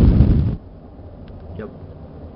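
A loud, half-second rush of air hitting the microphone right at the start, as the small fire of talcum powder and deodorant in a plastic container is put out. It is preceded by a sharp click.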